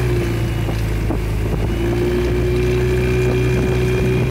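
Motorboat's outboard engine running at a steady speed, an even drone with a thin whine above it.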